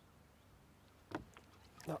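Faint, steady low background noise with one short knock about a second in, followed by a few faint ticks; a man's voice starts right at the end.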